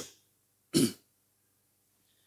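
A man clears his throat once, briefly, into a microphone, about a second in.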